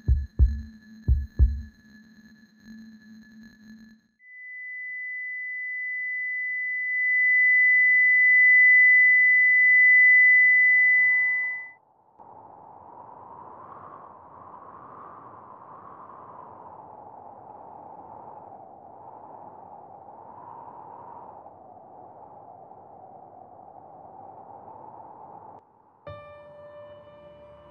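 A few low heartbeat-like thumps end in the first second or two. Then a single steady high beep, a patient monitor's flatline tone that marks the heart stopping, swells for about eight seconds and cuts off suddenly. A soft, wavering airy drone follows.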